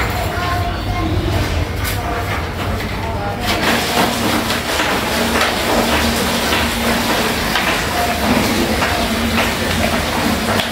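Brush scrubbing air-conditioner parts: first a removed panel scrubbed by hand over a low hum, then, after a sudden change about three and a half seconds in, a denser scratchy run of quick brush strokes on the indoor unit's coil and fins.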